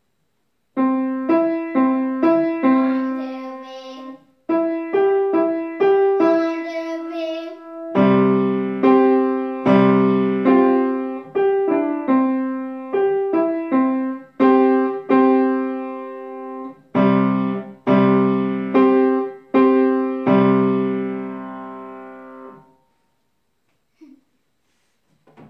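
Acoustic grand piano playing a tune one note at a time, with a short break about four seconds in. From about eight seconds in, low notes sound together with the melody notes, and the playing stops about a second before the end.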